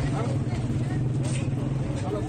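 Street recording on a phone: people's voices over a steady low engine hum.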